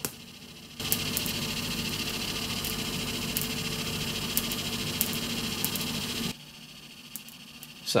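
Static crackle from a Pioneer CT-F950 cassette deck's audio output: a hiss with scattered sharp ticks that starts abruptly about a second in and cuts off abruptly near six seconds in. It is the sign of static building up on a tape-transport spindle that isn't properly grounded.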